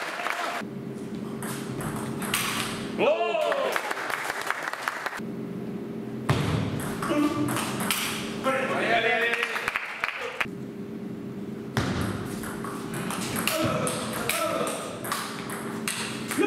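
Table tennis ball clicking off the bats and the table in quick exchanges during rallies, with a few short shouted voice calls in between and a steady low hum of the hall.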